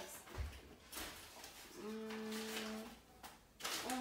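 A girl's voice holding a short steady hum for about a second near the middle, with a soft low thump shortly after the start.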